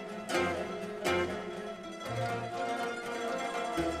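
A mandolin orchestra of mandolins, mandolas and guitars playing together. It opens with sharp plucked accents about a third of a second and a second in, then settles into a steadier melody over low bass notes.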